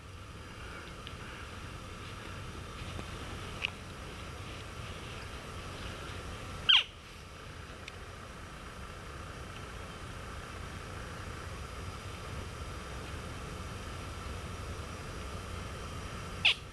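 Elk call blown by hand to call in a bull: one loud, short call falling steeply in pitch about seven seconds in, with a fainter short high note a few seconds earlier, over a steady low outdoor hiss.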